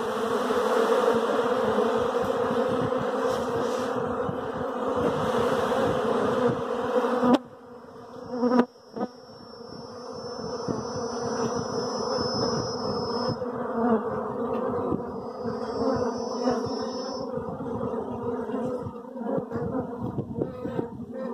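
Dense buzzing of a large mass of honeybees crowding and flying around the entrance of a wooden box, a steady hum that drops off suddenly about seven seconds in and swells back over the next few seconds. A faint thin high tone sounds twice in the second half.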